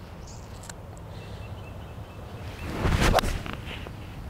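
A golf swing with a six iron: a short rush of the swing, then one sharp, clean club-on-ball strike about three seconds in, a pure, well-struck contact. It sits over a steady low background rumble.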